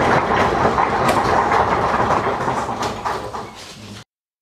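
Audience applauding, the clapping thinning out over the last second before the sound cuts off.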